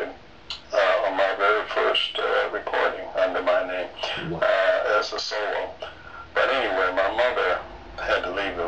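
A man's voice heard through a low-quality internet call, with long, wavering pitches broken by short pauses.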